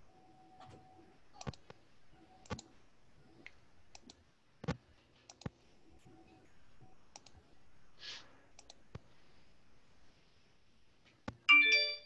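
Sparse, faint clicks at irregular intervals about a second apart, typical of a computer keyboard or mouse. Near the end comes a short, loud electronic chime of several notes, a computer notification sound.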